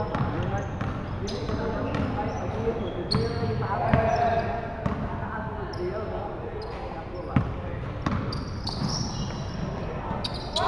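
Basketball bouncing on a hardwood gym floor during a pickup game, with sneakers squeaking and players' indistinct calls echoing in the hall. A sharp thud comes about seven seconds in.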